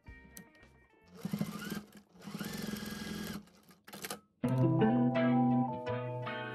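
Electric household sewing machine stitching through heavy cotton canvas in two short runs of about a second each, its motor whine rising as it speeds up. Background music plays throughout and becomes loud, with guitar, a little after halfway.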